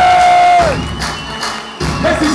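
A long held, whistle-like note that slides down and stops about two-thirds of a second in, then a higher, thinner whistle for about a second, over crowd noise. A hip-hop beat starts near the end.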